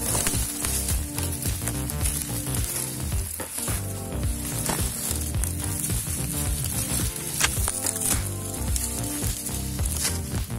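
Dense crackling rustle of dry grass and reeds being pushed through, with frequent short snaps. Instrumental background music plays underneath.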